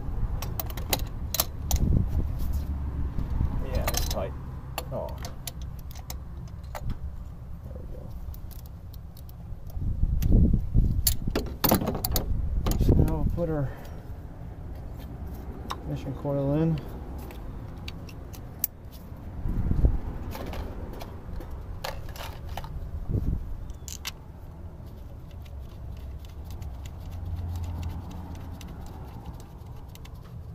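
Gloved hands handling and refitting ignition coils and their plastic wiring connectors on a Mazda CX-5's 2.5 L engine: many sharp clicks and small rattles, with louder bouts of handling around the middle, over a low steady rumble.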